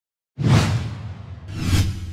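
Two whoosh sound effects of a logo intro sting. The first starts suddenly about a third of a second in and fades away; the second swells up to a peak near the end, both over a low hum.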